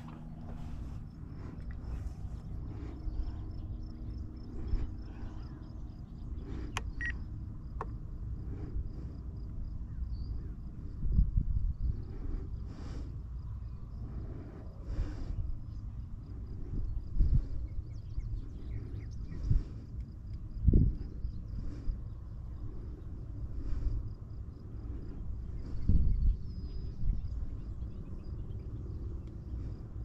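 Wind on the microphone: a low, uneven rumble with several louder gusts.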